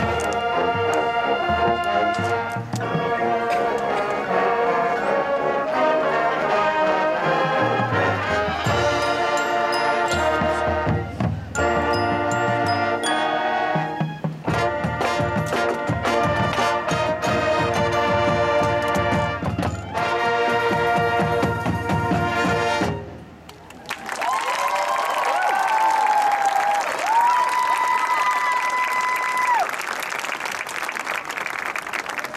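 A high school marching band, brass over drums and front-ensemble percussion, plays the closing section of its show in full, sustained chords. It cuts off about three-quarters of the way through. After a brief drop, the crowd breaks into applause and cheering, with long whooping shouts.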